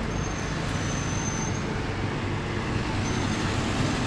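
Steady road traffic noise: an even wash of passing cars and engines with a low hum, and a thin high whine heard twice.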